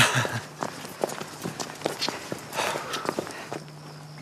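Footsteps of two people walking on a hard path: a quick, uneven patter of about four steps a second, loudest at the very start.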